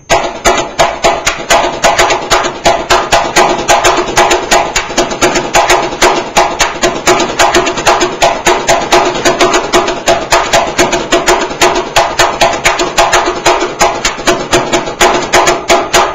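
Samba caixa (snare drum) played solo with two sticks, a samba-school bateria's signature caixa beat. It is a fast, steady rhythm of dense strokes with regular accents.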